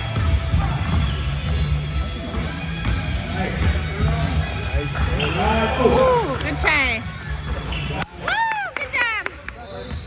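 Basketball being dribbled on a hardwood gym floor, with sneakers squeaking sharply on the court in a quick run of squeals during the second half.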